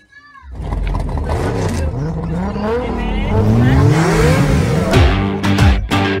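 Car engine revving as a sound effect, its pitch sweeping up and down several times and swooping down fast near the end, with music coming in under it.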